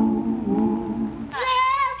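Old-recording singing voice holding low, wavering notes, then jumping suddenly to a high, squeal-like held note near the end.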